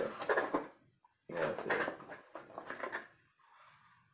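Cardboard game box being handled and turned over, with a low murmured voice, in uneven stretches that stop for a moment about a second in and again near the end.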